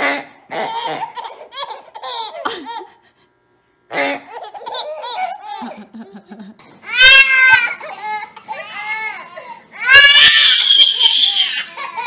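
Babies laughing and babbling in short bursts, with loud high-pitched shrieks twice: once about seven seconds in and again near the end.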